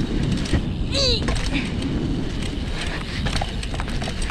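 BMX tyres rolling over a packed-dirt track, with wind rushing and buffeting on the microphone at riding speed. A short vocal cry comes about a second in.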